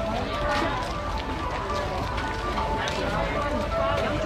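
Busy market ambience: background chatter of vendors and shoppers with music playing, over a steady low rumble.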